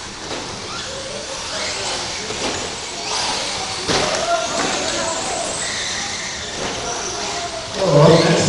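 2WD short course RC trucks racing on an indoor dirt track: a steady mix of electric motor whine and tyre noise, with two sharp knocks about three and four seconds in.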